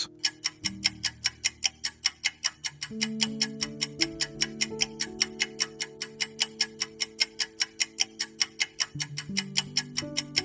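Fast, even clock-tick sound effect of a quiz countdown timer, several ticks a second, marking the answer time running out. Soft background music with held chords plays underneath.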